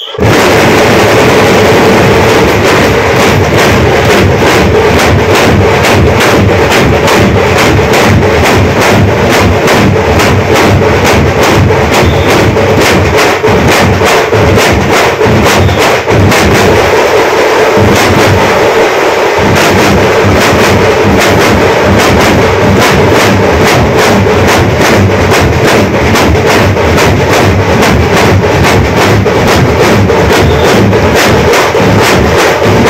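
A troupe of folk drummers beating large drums with sticks together in a fast, loud, driving rhythm, starting suddenly at full volume.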